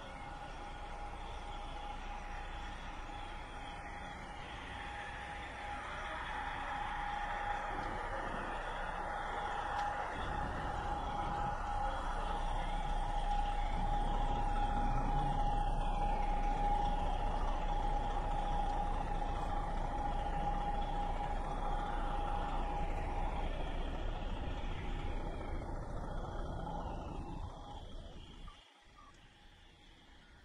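City traffic noise with a steady whine from a vehicle, swelling louder and then easing off before cutting off suddenly near the end.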